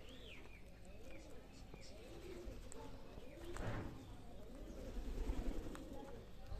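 Feral rock pigeons cooing, faint and repeated in a run of low rolling coos, with a single higher bird chirp right at the start.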